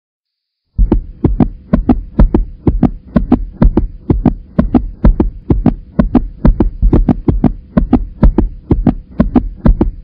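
A heartbeat sound effect: deep thumps in quick pairs, about two pairs a second, over a faint steady hum. It starts just under a second in and cuts off sharply at the end.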